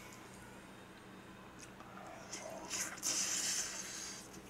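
A man slurping up a mouthful of jjajangmyeon noodles, a short loud hissing slurp about three seconds in, over a faint steady hum.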